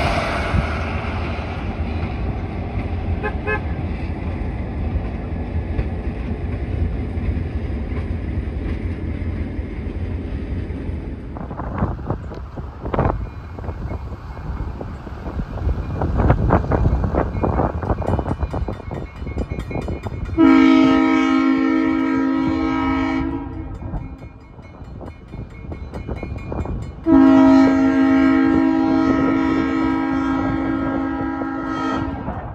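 Diesel locomotive horn on an approaching train sounding two long blasts of several tones at once for a grade crossing, the first about three seconds long and the second starting near the end. Before them, the low steady rumble of a passing passenger train, then a stretch of irregular knocks.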